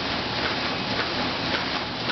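HOCK automatic PET/OPP film laminating machine with flying cutter running, a steady hissing mechanical noise with a light regular tick about twice a second.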